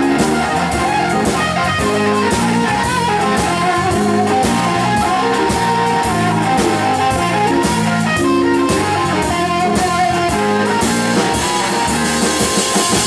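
Live blues band playing an instrumental break: electric guitar lead over a walking bass line and a drum kit keeping a steady beat with cymbals.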